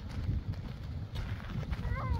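Footsteps crunching on loose dirt and gravel under a steady low rumble of wind on the microphone; near the end a child's voice begins calling out with a wavering, sing-song pitch.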